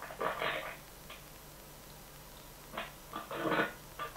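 A dog making a few short, faint noises, picked up over an open microphone.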